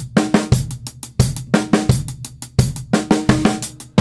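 Drum kit playing a steady groove in hand-to-hand sixteenth notes on hi-hat and snare over the bass drum. Strong low drum hits recur in an even beat.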